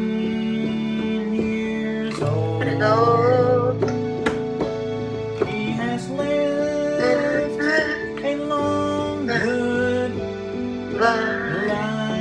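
Electronic keyboard playing held chords over bass notes, with a voice singing a melody over it from about two seconds in.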